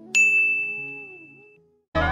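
A single bright bell ding sound effect that rings on one clear tone and fades away over about a second and a half. Just before the end, loud music cuts in.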